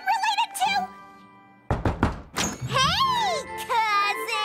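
A sudden wooden door thud about 1.7 seconds in, as a cartoon door is flung open, set between a high, excited cartoon voice before and after it.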